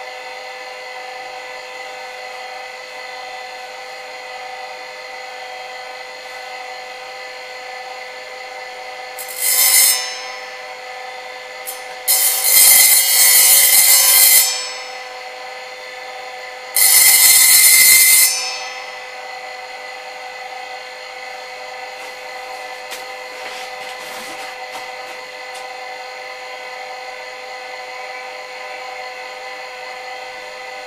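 Brushless-motor power hone spinning a 200 mm diamond disc with a steady whine, broken three times by bursts of harsh grinding hiss as a small steel blade is pressed against the disc: once about a third of the way in, a longer pass near the middle, and another shortly after.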